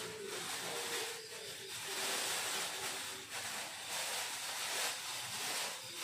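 Plastic bags crinkling and rustling as they are handled, an irregular crackly hiss.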